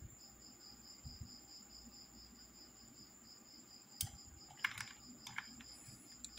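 Faint background with an insect's steady, fast-pulsing high chirp, about five pulses a second. A few sharp computer clicks come about four and five seconds in.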